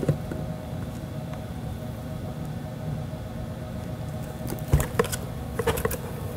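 Crop-A-Dile Big Bite hand punch being squeezed through the box's paper-covered edge: a few sharp clicks and one heavier knock near the end, over a steady low hum.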